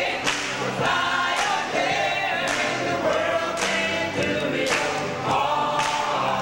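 Mixed gospel choir singing together at full voice, with sharp hand claps about once a second.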